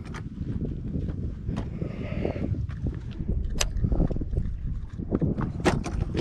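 Low rumble of wind buffeting an outdoor camera microphone, with a few sharp clicks and knocks as fishing tackle is handled.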